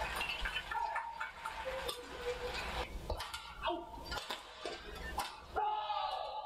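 Badminton rally: sharp racket strikes on the shuttlecock and short squeaks of shoes on the court floor, ending with a louder cry near the end as the point is won.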